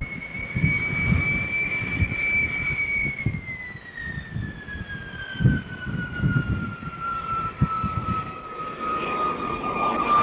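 Jet aircraft engine whining: a high whine holds steady for about three seconds, then falls slowly in pitch, with irregular low thumps and rumble underneath.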